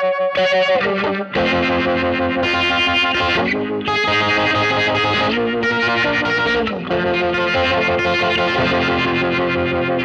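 Electric guitar played through a Boss GT-1000CORE multi-effects processor on its "Vintage Vibe" preset, with an overdriven tone. It plays sustained chords that change every second or two, with pitch slides between some of them.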